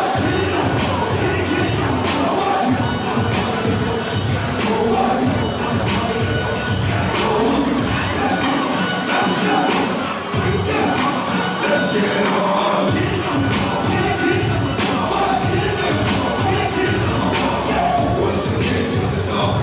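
Loud dance music with a steady beat played over a hall's sound system, with an audience cheering and shouting over it. The bass drops out briefly twice around the middle.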